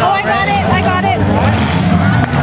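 Demolition derby car engines running in a steady low rumble, with voices shouting over them.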